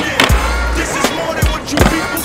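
Hip-hop beat with deep bass hits about once a second, mixed over skateboard sounds: urethane wheels rolling on pavement and sharp clacks of the board's tail popping and landing.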